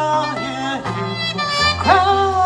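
Live acoustic music: a singer's wordless vocal line sliding and bending between notes, with a quick upward slide near the end, over acoustic guitar holding low notes.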